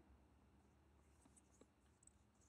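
Near silence: faint room tone with a couple of very faint ticks.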